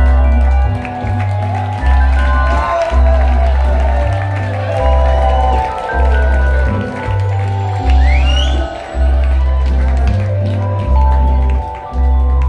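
A live rock band playing an instrumental passage: drums, guitars and keyboard, with deep bass notes changing about once a second under held chords. There is a short rising glide about eight seconds in.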